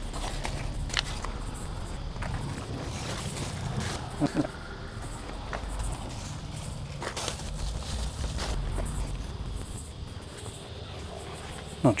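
Cucumber vines being handled for picking: leaves rustle, with scattered light clicks and knocks as the fruit is pulled from the plant.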